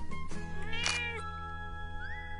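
A domestic cat meows once, a single call that rises and falls in pitch over about half a second, about a second in, over background music with steady held notes.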